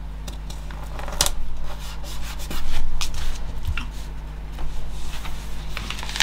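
Paper sticker pressed and rubbed down onto a paper planner page, with light clicks and taps of the tweezers and hands on the page and table. The louder rubbing comes about three seconds in, over a low steady hum.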